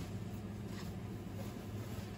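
Low steady hum with a couple of faint, light handling sounds.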